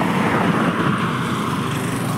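Cars passing close by on an asphalt road, a steady rush of engine and tyre noise as they overtake.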